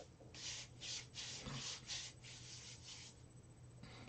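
Faint hiss of palms rubbing together in quick strokes, about three a second, working a scoop of beard balm to melt it from solid to liquid. The strokes die away in the second half.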